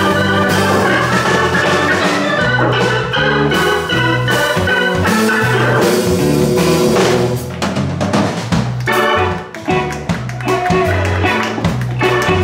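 Live blues band playing an instrumental passage: a keyboard set to an organ sound plays lines over electric bass and drums, with the bass stepping from note to note. The playing dips in level for a moment about three-quarters of the way through.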